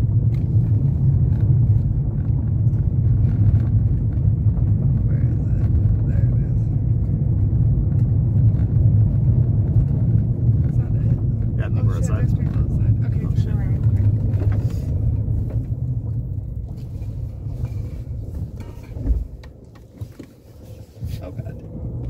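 Car driving, heard from inside the cabin: a steady low road-and-engine rumble that dies down near the end as the car slows, with a single thump about three seconds before the end.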